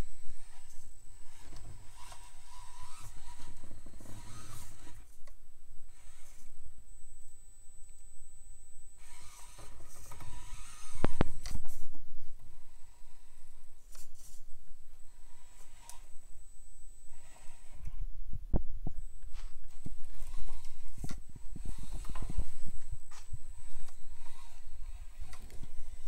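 Axial SCX24 micro crawler's small electric motor and gears whirring in spurts as it crawls, with its tires scraping and knocking over logs and rock. A sharper knock comes a little before halfway.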